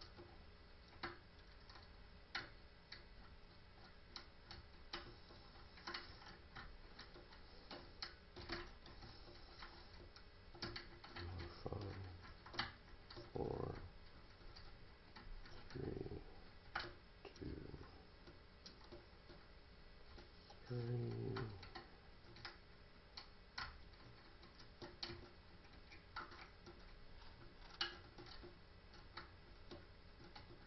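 Faint, irregular small metal clicks and ticks from a pick and tension wrench single-pin picking a five-pin deadbolt, as the pins are lifted and set. A few short low murmurs come in between, the loudest a little after the middle.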